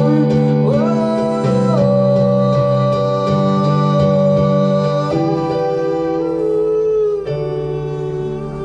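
Live electronic keyboard playing sustained chords that change about every two seconds, with a man singing a long held note over them.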